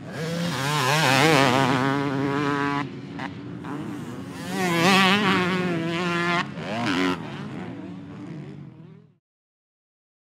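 A 2006 Suzuki RM250's two-stroke engine revving hard over jumps, its pitch rising and falling, then two-stroke dirt bike engines revving again about four and a half seconds in. The sound dies away and cuts out about nine seconds in.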